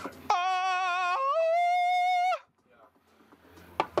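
A single sung 'aah' with vibrato: one held note that jumps up to a higher note about a second in, then cuts off sharply, followed by near silence. The sound is clean with no room noise under it, like an added sound effect.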